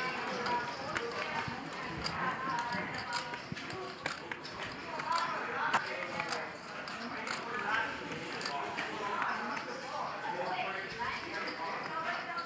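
Poker chips clicking against each other as players handle their stacks, with scattered sharp clicks, under low murmured conversation at the table.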